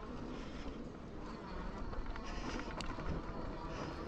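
Fat-tyre e-bike rolling along a dirt forest trail: a quiet, steady rumble of tyres on the dirt, with a couple of faint ticks and rattles.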